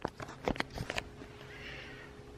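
Camera handling noise: a few soft knocks and rustles in the first second, then a faint breathy sound near the end.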